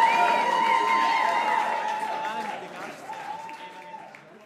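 Concert audience applauding, with voices and a steady high tone held over the clapping; the sound fades out over the last two seconds.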